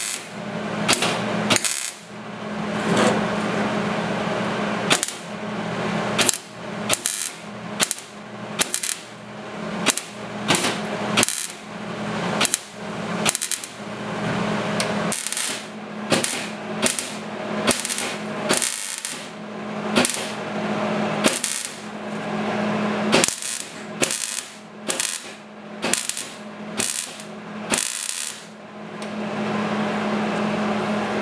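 MIG welder stitch-welding a thin sheet-steel patch panel into a rusty trunk floor: short crackling bursts of the arc about a second apart, with a few longer runs, over a steady hum.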